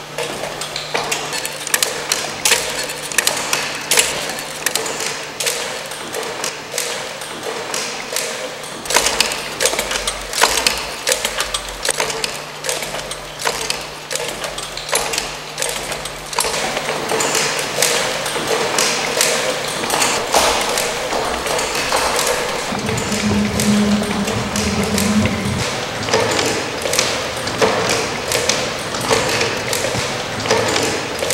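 Wooden kinetic-sculpture mechanisms clattering with dense, irregular clicks, taps and knocks of wooden parts and strings. A low steady hum runs under the first half and stops at a cut, and a short low tone sounds about 23 seconds in.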